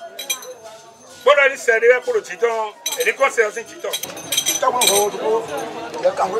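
Glass bottles clinking against one another as a hand moves among them, several sharp clinks in the second half, with a man's voice alongside.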